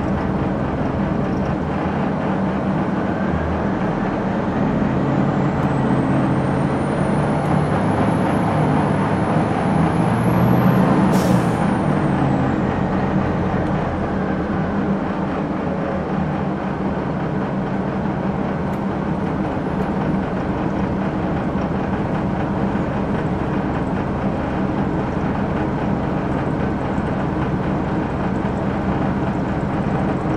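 The Detroit Diesel Series 50 engine of a 2001 Gillig Phantom transit bus running. It builds to its loudest about eleven seconds in, with a thin high whine that rises over several seconds and then drops off sharply; after that it settles back to a steady run.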